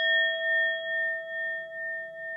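A struck bell chime sound effect ringing on after its strike, a few clear pitches held together that pulse about twice a second as they slowly fade.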